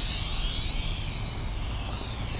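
Small quadcopter's motors and propellers whining in flight. The pitch sags about halfway through and rises again as the throttle changes.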